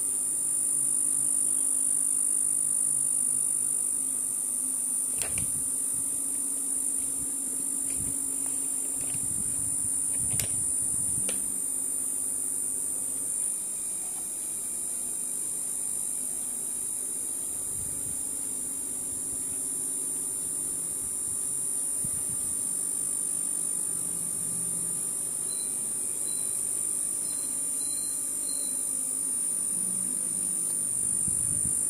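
Steady electrical hum with a constant high-pitched whine above it, broken by a few soft clicks about five and ten seconds in.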